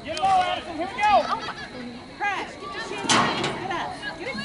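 Scattered shouts and calls from players, coaches and spectators at a youth football game, with no clear words. A louder burst of noise comes a little after three seconds in.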